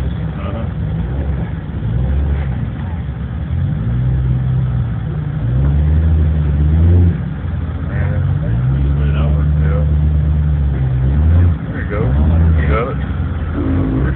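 Off-road vehicle engine revving in long pulls under load as a rig crawls up a rock ledge. The pitch rises and holds for a second or two at a time, twice in the middle and briefly again near the end, over a steady low running note.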